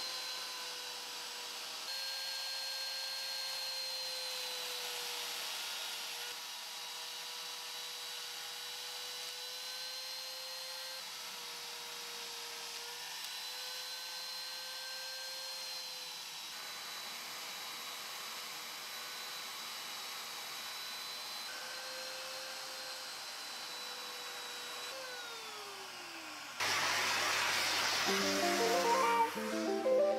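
Trim router running at high speed, its pitch dipping slightly as the bit cuts into MDF through a paper logo template. Near the end the motor is switched off and winds down, and then a shop vacuum starts, much louder.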